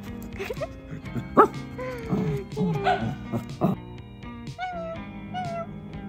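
A dog yipping and whining over background music, with one sharp, loud bark about a second and a half in.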